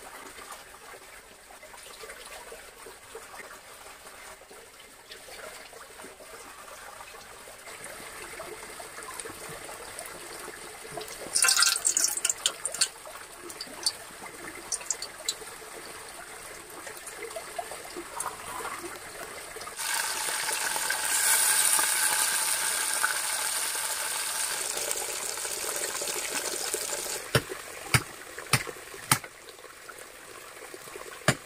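Running water of a small forest stream, a steady rush, with a louder splash about twelve seconds in and a louder, stronger rush of water for several seconds past the middle. A few sharp clicks near the end.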